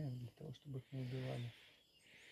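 A man's voice speaking until about a second and a half in, then a faint steady hiss.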